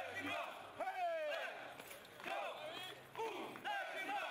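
Men's voices shouting out calls, several in a row, one a long falling shout about a second in, from Roman legionary reenactors marching in formation.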